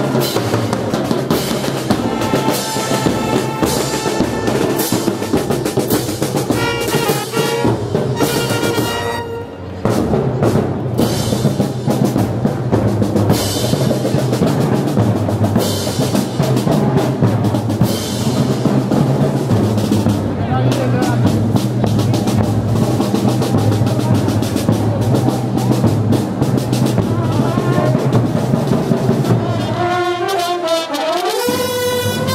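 Street marching band playing a march: bass drums and snare drums keep a steady beat under saxophones and other wind instruments, with a short break in the music about nine seconds in.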